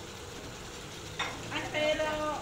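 Crabs frying in a wok, a steady sizzle. Near the end a high-pitched voice starts speaking over it.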